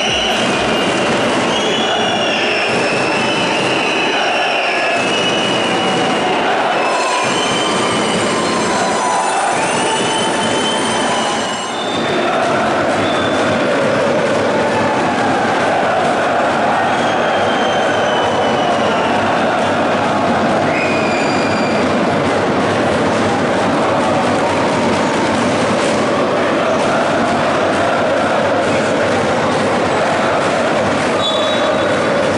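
Large crowd of basketball supporters chanting loudly in an indoor arena, with shrill whistles rising and falling over the noise in the first twelve seconds.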